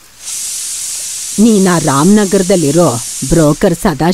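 Food sizzling in a pan on a kitchen stove: a steady hiss that starts suddenly just after the start and stops shortly before the end.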